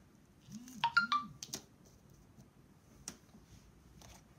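A short electronic chime of three quick high notes about a second in, like a phone notification, over a man's low hummed 'mm-hm'. Two light clicks follow, one at about a second and a half and one near three seconds, as the hard plastic counting shapes are set down on the table.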